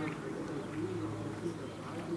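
Low, soft cooing of a bird in the trees over a steady low hum.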